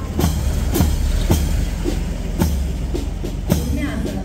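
A six-wheeled military truck's diesel engine rumbles low as it drives past. Over it, a marching band's drum beats steadily at about two beats a second.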